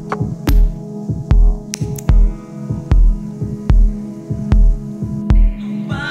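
Electronic music track: a deep, slow kick drum pulses about every 0.8 seconds under a sustained low drone, with sharp clicks and ticks scattered between the beats.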